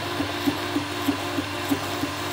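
Arduino-controlled diode laser engraver running a job: a steady fan hiss with a short pitched buzz from the stepper motors repeating about four to five times a second as the head steps along.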